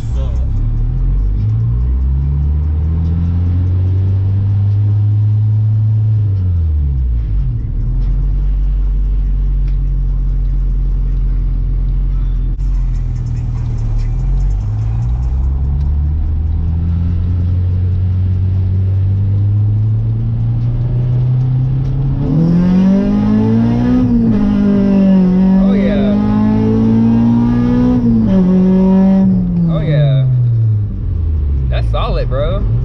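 Honda B20 VTEC hybrid engine heard from inside the car under hard acceleration, its pitch climbing through each gear and dropping back at the shifts. About two-thirds of the way in the note turns much louder and harsher as it climbs to high revs, then falls away near the end.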